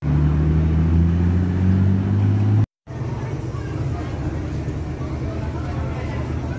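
Nissan Skyline R32's engine running loud and steady as the car slides sideways, rising slightly about two seconds in, then cut off abruptly. After that, the quieter, low sound of an early Chevrolet Corvette convertible's V8 running as it rolls past.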